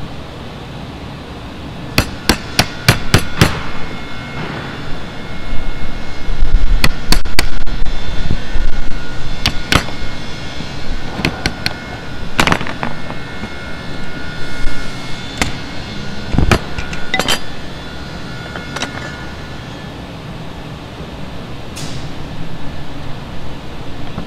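Steel hammer striking a wood chisel as it chops out the throat mortise of a wooden hand-plane body. The blows are sharp and irregular: a quick run of about five about two seconds in, then single strikes scattered through the rest.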